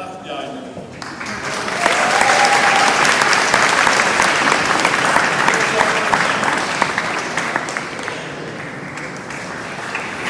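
Audience applauding in a hall, starting about a second in, loudest for several seconds and easing toward the end.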